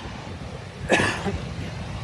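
A single short, breathy vocal noise from a person, about a second in, over a low steady outdoor rumble.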